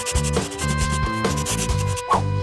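Crayon scribbling on paper in quick repeated rubbing strokes, over background music with a steady bass line.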